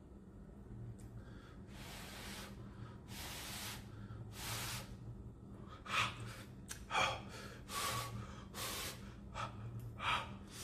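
A man breathing hard in and out through his open mouth around a mouthful of scalding-hot noodles, trying to cool them. There are three long breaths, then quicker, sharper gasps from about six seconds in.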